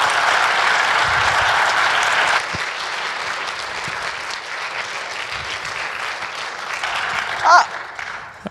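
Audience applauding, at its fullest for the first two and a half seconds, then thinning out and fading away.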